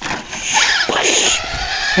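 Radio-controlled car driving on a dirt track: a brief rush of noise with short high-pitched whines in it.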